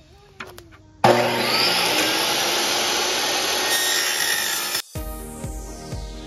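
A portable table saw starts about a second in and runs loud and steady for nearly four seconds, its blade cutting into a hardcover book. The sound cuts off suddenly near the end and music with a regular heavy beat takes over.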